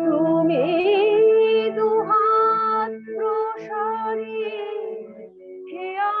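A woman singing a slow devotional song, drawing out long held notes with a wavering pitch over a steady sustained accompaniment.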